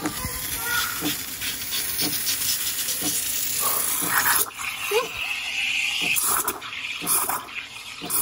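Calphalon espresso machine's steam wand hissing steadily as it steams milk in a stainless-steel pitcher, with a higher-pitched screech from about four and a half seconds in, lasting nearly two seconds.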